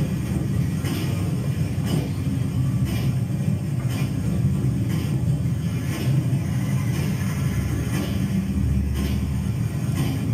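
Steady low engine rumble of a minibus driving, from a film soundtrack played through auditorium speakers, with a faint click about once a second.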